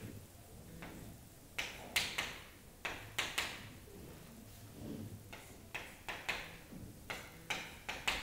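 Chalk tapping and scraping on a chalkboard as marks and letters are written: a dozen or so sharp taps and short strokes in small groups of two or three.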